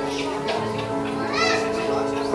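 Music with long held notes, with children's voices over it; a high child's call rises and falls about one and a half seconds in.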